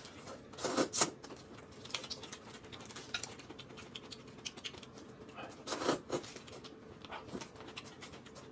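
Close-up eating sounds: crisp lettuce-leaf wraps being bitten and chewed, a string of small wet crunches and mouth clicks, with two louder bursts about a second in and again around six seconds in.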